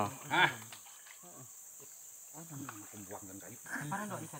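Steady high-pitched drone of insects.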